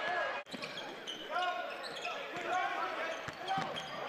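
Live basketball game sound: a ball bouncing on a hardwood court amid the crowd noise of an indoor arena, with a momentary dropout just under half a second in.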